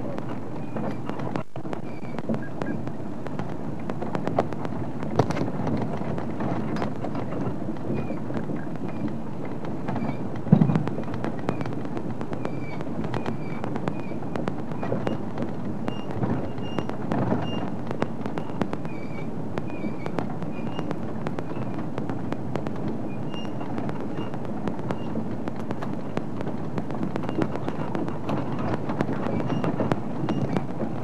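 Game-drive vehicle driving along a rough dirt track: steady engine and road rumble with frequent rattles and knocks from the bodywork over the bumps, and one heavier thump about ten seconds in.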